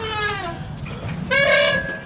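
A child's drawn-out, high-pitched 'wee!' squeals while swinging: one call trails off just after the start, and another comes about a second and a half in.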